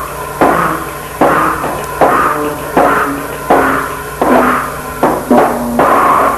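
Lo-fi noisecore recording: loud, distorted crashes repeating about every 0.8 seconds over a steady low hum.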